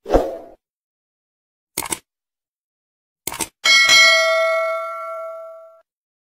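Sound effects of a YouTube subscribe-button animation: a short burst at the start, two sharp clicks about a second and a half apart, then a bell ding that rings out and fades over about two seconds.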